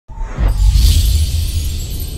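Logo intro music: a deep bass rumble under a high, hissing whoosh that swells to a peak about a second in and fades away.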